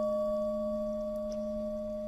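A Buddhist prayer bell ringing on after a single strike: a steady low hum with a few higher overtones, slowly fading. It sounds in the pause between the chanted Buddha-name invocations.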